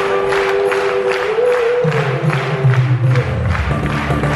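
Live circus band playing with a steady beat: a long held note, then low notes come in about two seconds in. Audience applause runs underneath.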